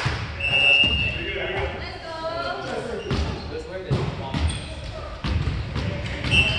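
Indistinct players' voices echoing in a large gymnasium, with several sharp thuds of a volleyball bouncing on the hardwood floor between rallies.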